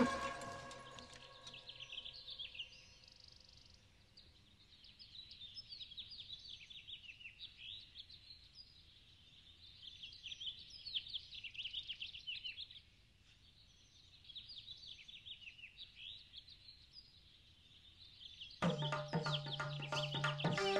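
Small birds chirping in quick bursts of short, repeated calls, with pauses between the bursts. A music score fades out at the start and comes back in loudly near the end.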